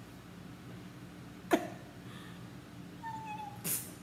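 A kitten giving one short, thin, high mew about three seconds in. About halfway through there is a single sharp, loud squeak or click, and a brief rustle just before the end.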